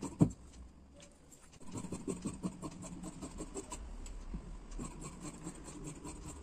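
Tailoring scissors cutting through layered blouse cloth and lining: a run of short, irregular snips with the cloth rustling, after a single sharp knock about a quarter second in.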